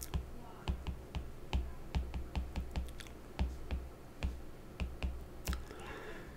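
A stylus tapping and scratching on a tablet's glass screen while words are handwritten: faint, irregular small clicks, several a second.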